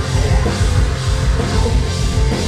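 Live metal band playing at full volume: electric guitars over a drum kit, with quick kick-drum pulses.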